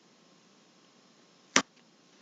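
Quiet room tone broken by a single short, sharp click about one and a half seconds in.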